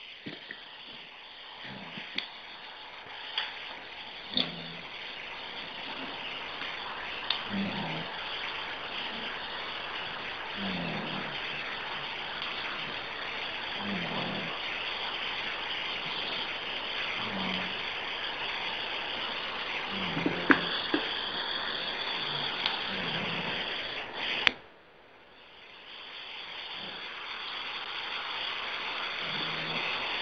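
Telephone-line hiss on an open conference call, with scattered clicks and a faint low sound recurring about every three seconds. The line drops out about 25 seconds in, then the hiss fades back.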